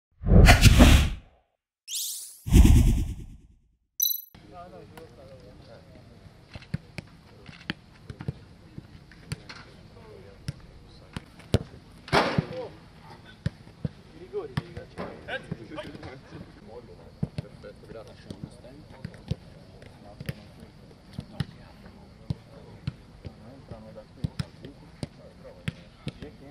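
A short, loud intro sting of whooshing sweeps over the first four seconds. It is followed by footballs being kicked on an outdoor pitch: sharp thuds at irregular intervals, several a second at times, over faint calling voices.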